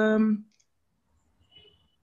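A woman's voice holding one long, steady-pitched hesitation sound that stops about half a second in, followed by near silence with faint clicking.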